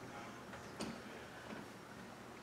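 Quiet room tone in a pause, with two faint small clicks, the first a little under a second in and the second about a second and a half in.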